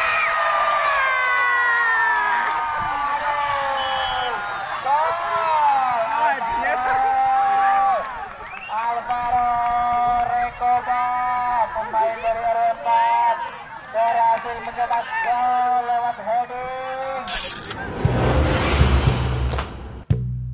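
A single voice in long, wavering sung notes, with crowd noise faintly behind it. Near the end a loud whooshing sound effect sweeps in.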